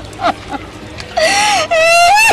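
A woman wailing in grief: short broken cries at first, then a loud, long, wavering wail from about a second in.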